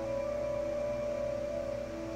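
Soft ambient background music: a held chord of steady, sustained tones.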